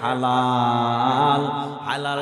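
A man's voice intoning one long drawn-out note in the chanted, sung delivery of a Bangla waz sermon, breaking off near the end.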